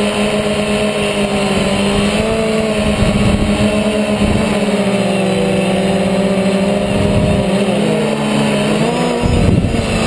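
DJI Phantom quadcopter's motors and propellers whirring steadily, heard close up from its onboard camera, the pitch shifting a little as it manoeuvres. Wind rumbles on the microphone, most strongly near the end.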